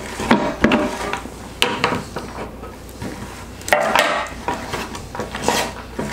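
Knocks and clinks of tools and plastic fittings being handled and set down on a tabletop, with a short ringing clink about four seconds in. A cordless drill is picked up, but its motor does not run.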